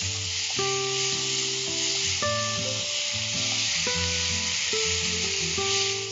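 Onion and tomato masala with green chilli and spice powder sizzling in a frying pan as a wooden spatula stirs it, with steady frying hiss throughout. Instrumental background music with held notes plays over it.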